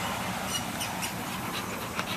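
A dog panting softly, short breaths every few tenths of a second, over a steady low background noise.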